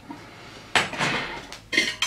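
Glass and metal objects clattering as they are handled: a glass candle jar being put down and a metal candle sleeve being picked up. There is a longer clatter about three-quarters of a second in, then a short clink near the end.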